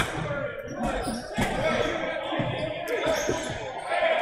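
Dodgeballs hitting and bouncing on a hardwood gym floor: a series of irregular thuds, with players' voices in the background.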